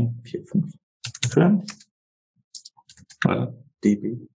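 Computer keyboard being typed on in short quick runs of keystrokes as hexadecimal values are entered, with soft speech between the runs.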